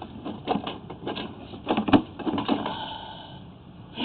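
Irregular clicks, knocks and scrapes as a sewer inspection camera's push cable is fed by hand into a clean-out, with the loudest knock about two seconds in.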